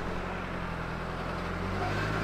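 Car engine idling steadily with a low hum.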